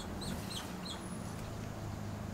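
A small bird chirping: a quick run of about six short, high chirps in the first second, then one more, over a steady low hum.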